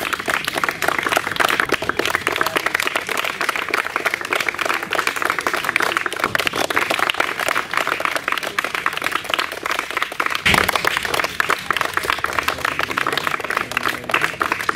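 A group of people clapping hands in steady, continuous applause.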